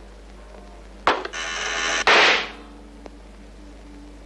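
A sharp click, then about a second of harsh, growing buzzing that ends in a very loud rushing blast: a deafening comic noise sent down a telephone line.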